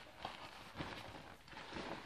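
Cloth hood of a hooded 75M gas mask being handled and flipped forward, giving faint, irregular rustles and light knocks of fabric and straps.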